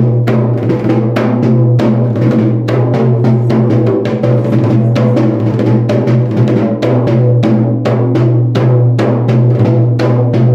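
Sinhala low-country ritual drumming on a yak bera: dense, rapid strokes several to the second over a steady low hum.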